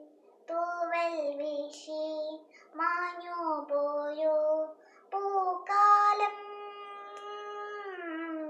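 A young girl singing solo, with no accompaniment, in short melodic phrases. Near the end she holds one long note.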